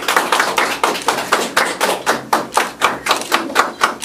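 A small group of people clapping by hand: a dense, uneven patter of claps.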